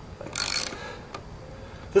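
Socket ratchet wrench clicking in a short burst about half a second in, then one more click, while driving a lag bolt into a pressure-treated 4x4 post.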